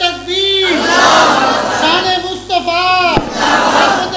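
Drawn-out melodic chanting through a microphone and loudspeakers, with the same sliding phrase repeated about every two seconds over crowd noise. A sharp knock comes about three seconds in.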